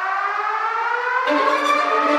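Siren-like rising tone with many overtones, climbing slowly and steadily in pitch, with a second lower steady tone joining about a second in. It is an edited build-up sound effect leading into the music of a workout montage.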